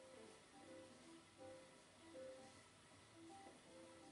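Faint music from a television, a simple melody of short held notes.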